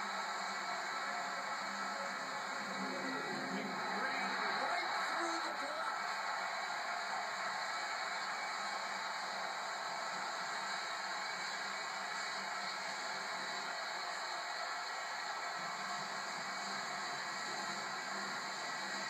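Steady roar of a football stadium crowd, swelling slightly about four seconds in.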